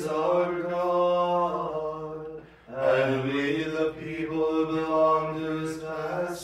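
Male voices chanting the Office of Lauds on long, nearly level notes, two sung phrases with a short breath between them about two and a half seconds in.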